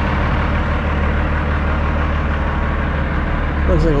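Diesel semi-truck engine idling steadily, a constant low-pitched running sound.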